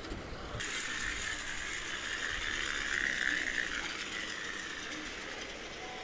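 Plastic toy monster truck's gears whirring with a steady high whine as it rolls across a hard floor, starting about half a second in, swelling around the middle and easing off later.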